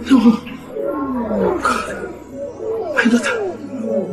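A woman wailing and sobbing in distress: repeated loud cries, each falling in pitch, broken by sharp breaths about every second and a half.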